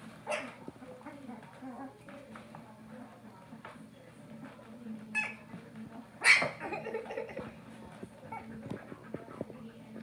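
11-day-old Siberian husky puppies giving short whimpers and squeals, a few separate cries with the loudest about six seconds in.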